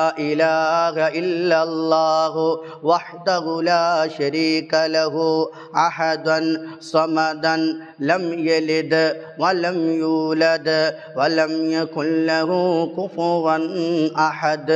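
A man chanting an Arabic dhikr (devotional formula of praise), drawing out its syllables in long held, melodic tones with brief pauses for breath.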